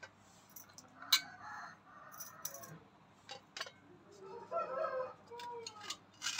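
A chicken clucking in two stretches, about a second in and again around four seconds in, with a few light clicks of a knife against a steel plate between them.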